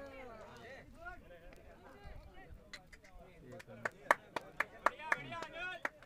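Faint, distant voices of players shouting across an open cricket field. In the second half come a quick, irregular run of sharp clicks, about four or five a second.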